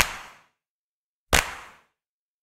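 Two sharp percussive hits, about one and a half seconds apart, each with a short ringing tail that dies away over about half a second: an evenly timed intro beat on the slideshow's soundtrack.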